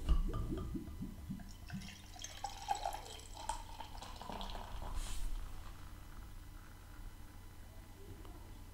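Beer poured from a glass bottle into a stemmed glass, the stream splashing and foaming as the glass fills; a quiet, uneven pour.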